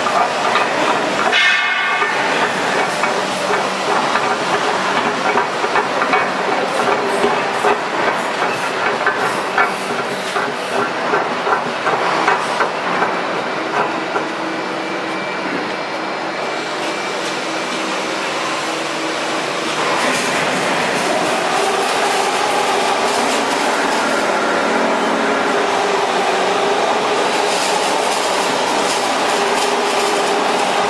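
Steel coil line running: a hydraulic uncoiler turning a galvanized steel coil and paying the strip off into a roll-forming machine. A fast metallic rattling clatter fills the first half, then it settles into a steadier machine hum.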